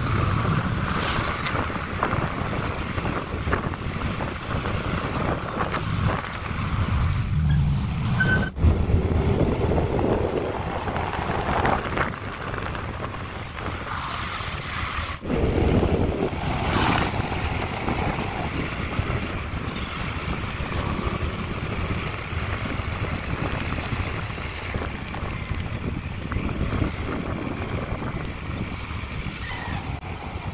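Wind buffeting the phone's microphone over the road and engine noise of a moving vehicle in city traffic, steady throughout, dropping out sharply twice.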